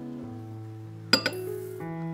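Soft background piano music, cut by one sharp glass clink about a second in as a small glass dish of instant coffee granules knocks against a glass mixing bowl, followed by a brief rustle of the granules pouring in.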